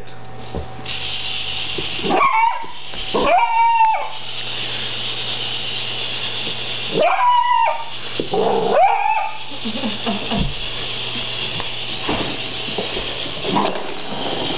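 A beagle barking, with four sharp barks near 2, 3, 7 and 9 seconds in, over a steady high hiss.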